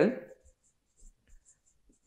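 Marker pen writing on a whiteboard: a few faint, short squeaks and ticks as the letters are drawn.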